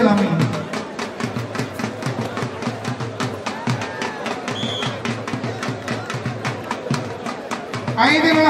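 Dhol drum beaten in a fast, steady rhythm of about six strokes a second.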